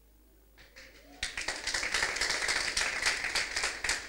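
Audience applauding, starting about a second in after a near-silent pause.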